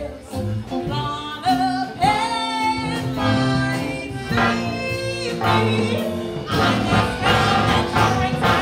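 Live band playing a song with a singer: sung lines over electric guitar, bass and drums. The music grows fuller and louder a little past the midpoint.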